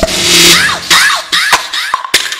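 Electronic battle-mix sound-check track: a loud noisy burst laced with several short falling zap-like sweeps and sharp hits, easing off after about a second and a half.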